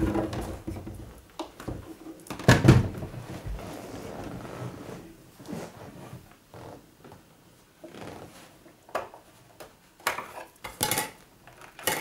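Plastic casing of a Tesla A5 radio cassette recorder being handled and turned around, with a loud knock about two and a half seconds in and scattered lighter clicks. A cluster of sharper plastic clicks near the end as the cover of the mains-cord compartment on the back is opened.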